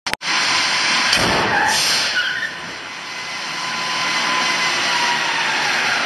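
A loud, steady rushing hiss with a faint thin whistle running through it. It starts and stops abruptly.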